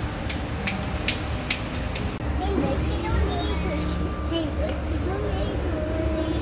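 Indistinct background voices, a child's among them, over a constant low rumble, with a run of sharp clicks in the first two seconds.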